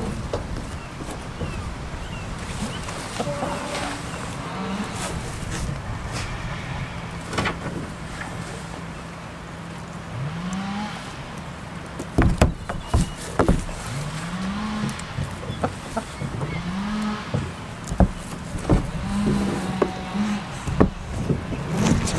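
Short, low calls rising in pitch from farm animals in a goat shed with hens, several times in the second half, with scattered sharp clicks and knocks from about halfway through over a steady low hum.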